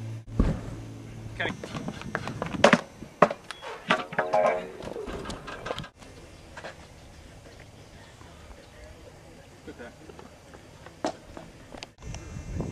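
People's voices talking briefly, with a few sharp knocks in among them. About six seconds in it drops to a quiet background with a few faint isolated taps.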